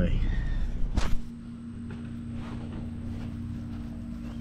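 Car cabin road noise, a steady low rumble, that cuts off abruptly about a second in, followed by a quieter steady hum of a couple of low tones.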